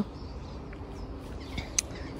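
Quiet garden ambience: a low steady outdoor rumble with faint bird chirps, and a short sharp click or two near the end.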